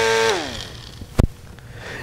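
Small battery-powered propeller fan whining steadily, then switched off about a third of a second in, its motor winding down with a falling pitch. A single sharp click follows about a second later.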